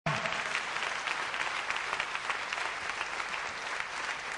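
A large theatre audience applauding: dense, steady clapping from many hands.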